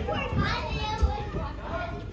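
Children's voices and chatter, with a sharp thump about a second in.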